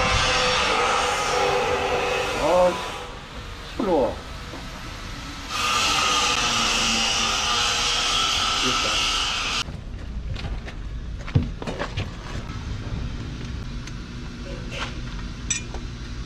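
Loud, steady machine noise from nearby building work, heard in two spells. The second spell cuts off suddenly about ten seconds in. After that come lighter clicks and knocks of equipment being handled.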